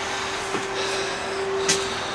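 Small circulating fan in a grow tent running with a steady airy whoosh and a faint hum that cuts off near the end. Two light knocks of a plastic plant pot being handled, about half a second in and near the end.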